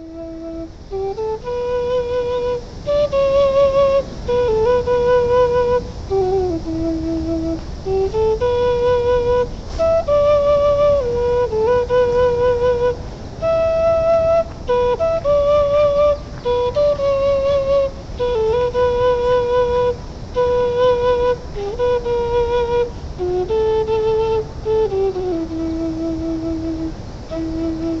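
Peruvian-made bamboo quenacho in D, a low Andean notched flute, playing a slow melody of held notes with vibrato.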